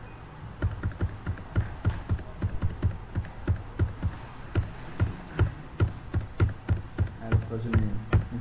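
Computer keyboard and mouse being worked, irregular clicks and taps two or three a second, each with a dull knock.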